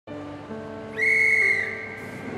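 A railway platform dispatch whistle blown once, a single high-pitched blast of a little over half a second about a second in, over soft background music.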